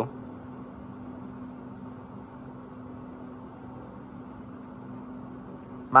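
Steady mechanical hum with an even hiss underneath, unchanging throughout: background noise of a running fan-type machine.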